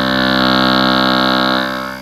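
Large cone loudspeaker playing a sine tone that comes out as a loud, steady buzz: the tone sits at the resonance frequency of the speaker's metal case, which rattles along with the cone.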